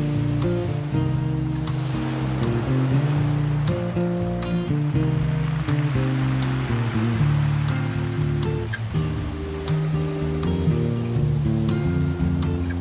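Classical guitar music, notes plucked in a slow melody, playing over ocean surf; the wash of waves swells twice beneath the guitar.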